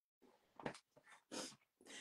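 Three faint, short breathy puffs of a person's breath, spread over the two seconds.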